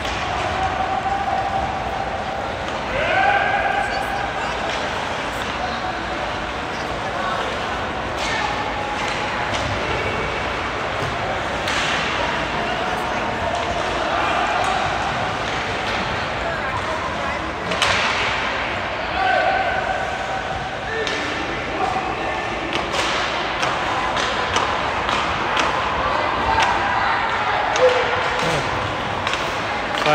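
Ice hockey play echoing through an arena: sticks striking the puck and the puck banging against the boards in scattered sharp knocks, over a steady scrape of skates on the ice.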